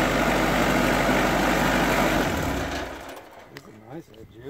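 Portable sawmill's engine idling steadily, then shut off about two and a half seconds in, the sound dying away quickly.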